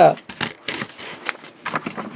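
Handling of a paper notebook on a tabletop: the rustle of the cover and pages as it is drawn over and opened, with a few light taps.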